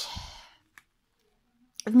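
A woman's breathy exhale, a sigh trailing off at the end of her spoken phrase, then a single faint click and silence before her speech resumes near the end.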